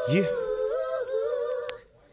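Wordless vocal melody of held notes that step up and down in pitch, with a spoken "yeah" at the start; it stops shortly before the end.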